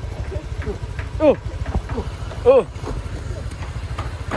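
Motorcycle engine running steadily at low revs, a continuous low rumble.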